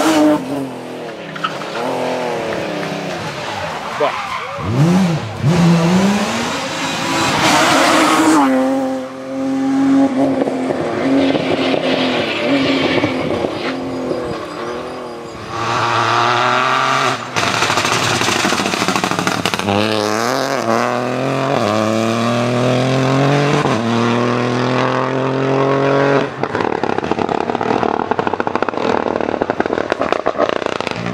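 Rally cars at full throttle, engines revving hard as they approach and pass. The pitch climbs through each gear and drops at every change, with a run of several upshifts in the second half.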